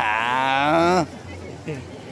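A man's long, drawn-out vocal call with a wavering pitch, lasting about a second. Faint crowd murmur follows.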